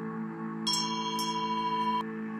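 Ambient background music: a steady drone with two bright bell-like chime strikes a little over half a second apart, ringing on and then cutting off suddenly.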